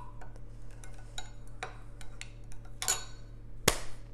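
A spoon stirring melted butter and garlic powder in a glass measuring cup: light, irregular clinks and taps of the spoon against the glass, with one louder knock near the end.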